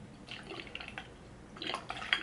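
Hair setting lotion being poured from its bottle into a water-filled spray bottle: faint, irregular pouring and dripping that gets a little louder toward the end.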